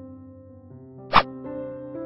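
Background music of sustained, steady chord tones, with a single short pop sound effect about a second in.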